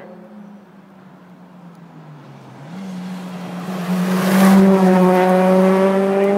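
A competing rally car's engine approaching at speed along the stage road, growing loud from about halfway through. Its pitch dips and then jumps back up a little after two seconds in, as the driver shifts and accelerates toward the microphone.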